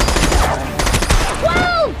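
Gunfire in rapid succession, many shots close together with a heavy low boom, thinning out after about a second and a half, when a man shouts.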